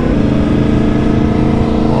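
Yamaha MT-10's crossplane inline-four engine running at steady cruising revs, recorded on board with wind and road noise underneath.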